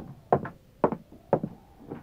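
Radio-drama sound effects: about four short knocks, roughly half a second apart, in a gap in the dialogue just after the cabin door is ordered open.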